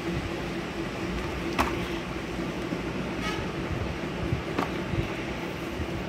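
Steady low background hum with a few short sharp clicks, about one and a half and four and a half seconds in, from Hot Wheels plastic-and-card blister packs being handled.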